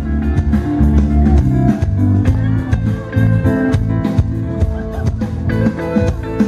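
Live pop band playing through a PA: drums keeping a steady beat under bass guitar and keyboards, with no singing.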